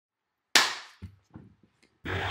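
A loud sharp smack from hands close to the microphone, with a short fading tail, followed by three or four faint knocks.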